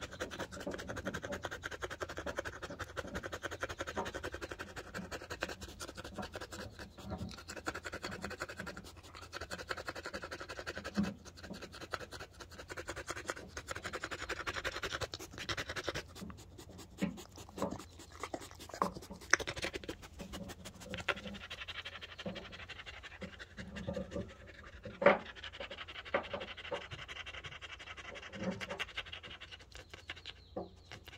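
A dog panting hard, worn out after running around in the mountains. Scratchy rubbing noises and scattered clicks come close to the microphone, the loudest a sharp click late on.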